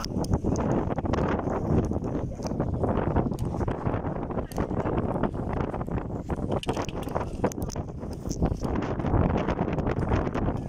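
Loud wind buffeting the microphone, with scattered knocks and clatter throughout.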